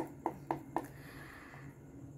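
A Mystic Mondays tarot deck being shuffled by hand: four quick, light card clicks about four a second, then a soft shuffling rustle.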